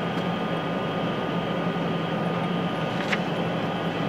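Steady low background hum with a thin steady tone above it, and a sharp click of glassware about three seconds in as a glass pipette and sample tube are handled.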